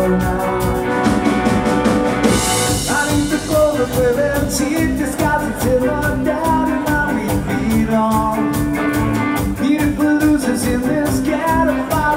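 Live ska band playing an instrumental passage: drum kit, electric guitars and bass, with trumpet and trombone playing at the start. A cymbal crash comes about two seconds in.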